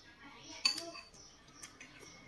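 A metal spoon clinking on a plate as rice is scooped, with one sharp ringing clink about two-thirds of a second in and a couple of fainter clicks near the end.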